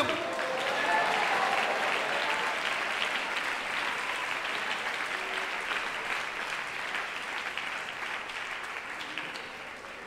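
Congregation applauding: a dense patter of many hands clapping that slowly fades away over about ten seconds.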